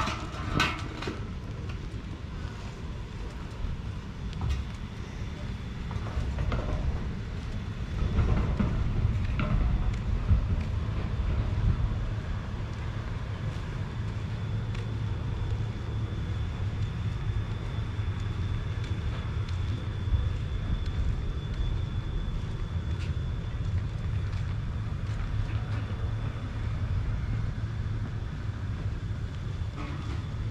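Outdoor ambience: a low, steady rumble, louder for a few seconds from about eight seconds in, with a faint high steady tone above it.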